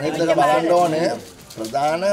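A man speaking loudly and animatedly, with a short break a little past halfway.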